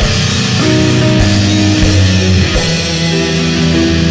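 A progressive rock band playing live: electric guitar and keyboard holding sustained notes over drums, with a low drum hit every half second to second.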